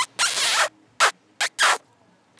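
A woman's kisses close to the microphone: a run of loud lip smacks, the second one drawn out, then three quicker ones about a second in.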